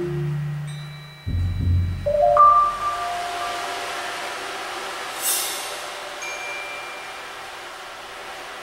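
Percussion ensemble playing: low marimba notes, then a deep low hit about a second in, followed by ringing high mallet notes. A brief bright splash comes about five seconds in, and the notes ring on softly.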